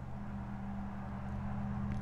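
Steady low electrical hum with a faint hiss beneath it, with no distinct handling sounds.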